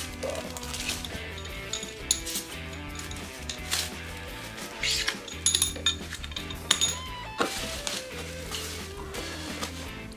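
Background music over the crinkle of plastic bags and light clinks as bagged shoulder-rig parts are handled in a cardboard box, with a cluster of handling noises a little after the middle.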